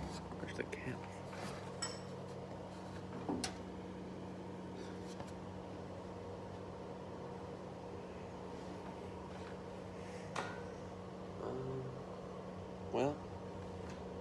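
Quiet room tone with a steady low hum and a few faint, scattered clicks and knocks.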